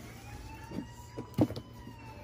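A faint siren wailing, its pitch slowly rising and falling. A few short knocks sound over it, the loudest about one and a half seconds in.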